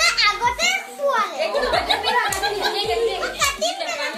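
Several children talking and calling out over one another, with music playing underneath.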